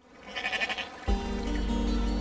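A sheep bleats briefly, then background music enters about a second in with a sustained low chord.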